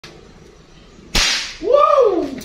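A single airgun shot about a second in: one sharp crack with a short decay as the pellet knocks a matchstick off the cardboard target.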